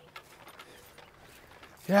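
Faint, scattered clicks and rattles of golf clubs knocking together in a carry bag as a golfer walks, followed at the very end by a spoken 'yeah'.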